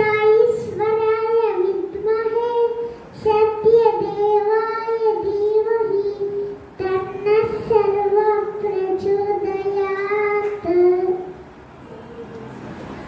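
A young boy singing solo into a handheld microphone, in long held phrases with short breaks between them.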